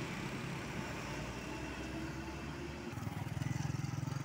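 Small motorcycle and scooter engines passing on a road. A nearer engine's low, pulsing rumble comes in about three seconds in and grows slightly louder.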